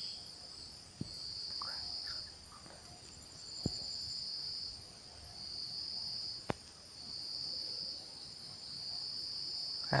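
Crickets trilling in repeated bursts of about a second each, with three short soft clicks in between.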